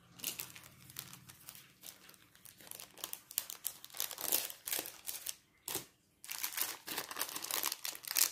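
Clear plastic bag holding a stack of stickers being handled, crinkling in irregular rustling bursts, with a brief pause a little past halfway.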